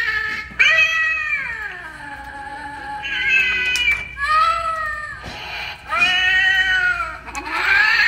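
Animated Halloween black cat figures playing recorded cat yowls: a run of about five long, drawn-out meows, several sliding down in pitch.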